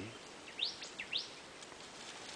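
A bird calling in the forest: a few quick, high chirps that sweep upward in pitch, close together.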